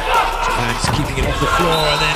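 A volleyball struck by hand during a rally: sharp smacks of palm on ball over arena crowd noise.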